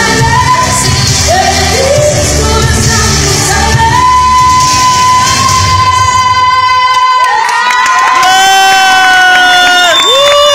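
A woman's voice holding a long high sung note over a loud backing track with heavy bass, recorded through a phone microphone in the audience. About seven seconds in the music stops and the crowd breaks into high-pitched cheering and screams.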